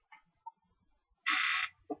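A chair squeaking once, a high-pitched squeal about half a second long, as the sitter shifts her weight and leans over.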